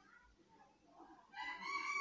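Near silence, then about a second and a half in, a faint, drawn-out, high-pitched call in the background.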